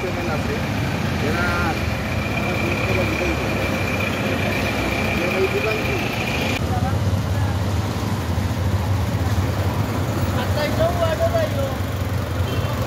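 Street traffic with a large bus's engine running close by at low speed. There is a steady low rumble under a thin, steady high whine that cuts off about two-thirds of the way through, and voices can be heard faintly in the background.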